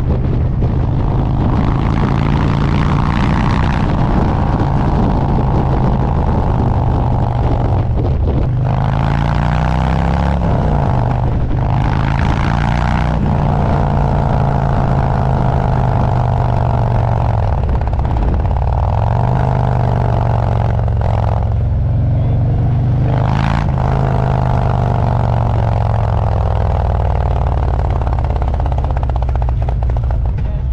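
Harley-Davidson Road Glide's V-twin engine running at road speed. The engine note falls and climbs again a few times as the bike slows and picks up speed.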